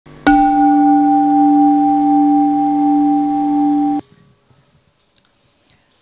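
A bell struck once, ringing a steady low tone with a higher overtone, then cut off abruptly about four seconds in.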